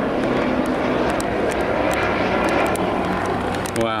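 Helicopter flying low overhead: steady turbine and rotor noise with a low hum.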